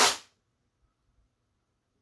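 A short, sharp puff of breath blown into the cut-open PCIe x1 slot to clear out plastic shavings, over within a third of a second and followed by near silence.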